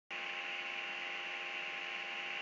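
Steady electrical hum and hiss, with several faint constant tones, picked up by a laptop webcam's microphone.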